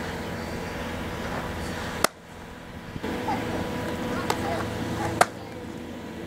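Sharp pop of a pitched softball landing in the catcher's leather mitt about two seconds in. Another sharp click, the loudest, comes about three seconds later over a steady outdoor background hum.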